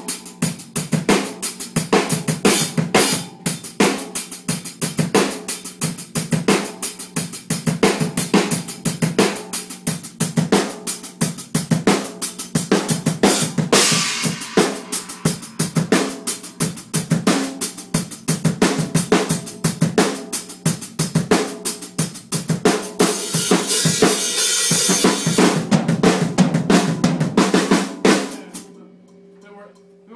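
Acoustic drum kit played hard in a studio room: a driving beat on kick and snare with hi-hat and tom hits, and stretches of crash-cymbal wash. The playing stops near the end, leaving the kit ringing out.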